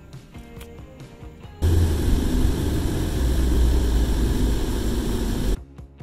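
Soft background music, cut about one and a half seconds in by four seconds of loud, deep rumbling noise that starts and stops abruptly.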